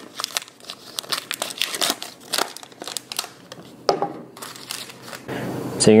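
A paper butter wrapper crinkles and tears in irregular crackles as it is peeled off a stick of butter. Near the end comes a short, steady sizzle from butter melting in a hot cast iron skillet.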